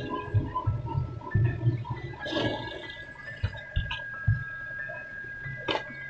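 Soft thuds and small knocks of a tailor handling cloth and tools on a work table, with a faint steady high tone underneath.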